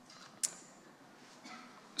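A single short, sharp click about half a second in, over quiet room tone.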